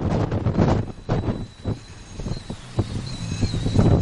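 Strong wind buffeting the microphone in irregular gusts, loudest in the first second and again near the end.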